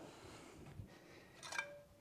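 Mostly quiet room, with a faint short metallic clink about one and a half seconds in as a small ash shovel for a wood-burning stove is picked up.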